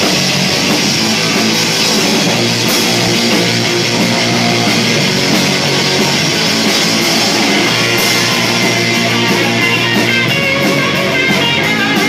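Live rock band playing an instrumental passage: electric guitars, bass guitar and drum kit, loud and dense, with a couple of cymbal hits standing out.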